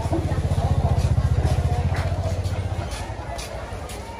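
A small motor scooter engine running at low speed right alongside, a low, rapid pulsing that swells and then fades away about three seconds in as the scooter passes.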